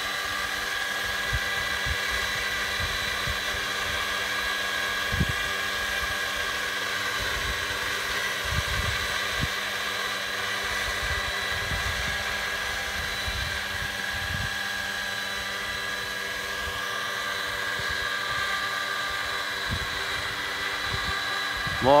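Radio-controlled scale Hughes 500E helicopter hovering, with a steady high whine from its motor and rotors and irregular low thumps of wind on the microphone.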